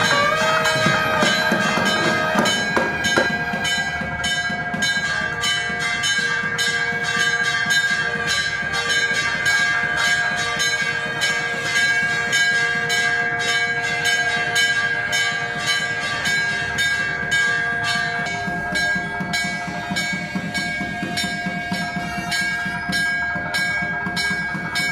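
Temple bells rung in a fast, steady clanging rhythm, their tones ringing on continuously over the strokes: the bell-ringing that accompanies the deeparadhana (lamp offering).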